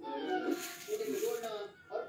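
A woman's voice singing a slow Hindi song melody with held, wavering notes, broken by a short pause near the end.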